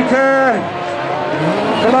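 VW Beetle-based autocross race cars with air-cooled flat-four engines running hard on a dirt track, the engine notes rising and falling as the drivers work the throttle.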